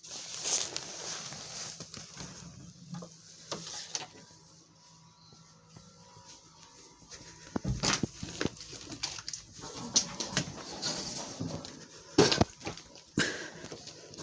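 Rustling and irregular sharp knocks of objects being handled and bumped close to a handheld camera's microphone, with the loudest knocks in the second half.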